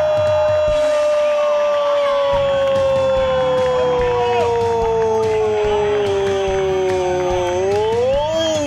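A football commentator's drawn-out goal cry: one long held 'Gooool' that slides slowly down in pitch for several seconds, then rises and bends again near the end.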